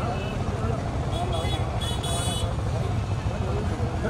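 Outdoor crowd ambience: faint background voices over a steady low rumble.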